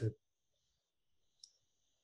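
A man's word trails off, then a quiet pause with a faint high hiss and a single short, faint click about a second and a half in.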